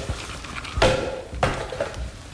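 Clatter of plastic doll parts being handled on a worktable, with two sharp knocks a little over half a second apart, the first the louder.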